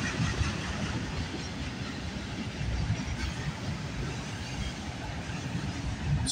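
CN mixed freight train's cars, auto racks among them, rolling steadily past on the rails.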